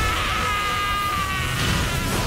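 Anime fight-scene sound effects over music: a high buzzing whine that falls slightly in pitch and cuts out after about a second and a half, over a heavy rumbling noise.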